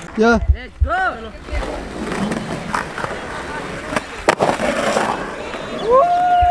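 Skateboard wheels rolling over a concrete skate bowl, with one sharp clack of the board about four seconds in. Short voice calls sound in the first second.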